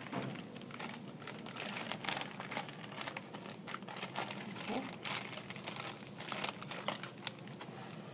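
A plastic zip-top bag crinkling and rustling in gloved hands as a preserved fetal pig is pushed into it, in irregular crackles.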